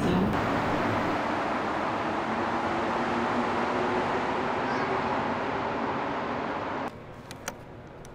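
Montreal Metro train and station noise: a loud, steady rush with a low hum. It cuts off suddenly about seven seconds in, leaving a quieter background with a few short clicks.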